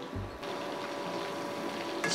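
Chicken pieces deep-frying in hot oil in a kadai: a steady sizzle. A snatch of background music stops about half a second in.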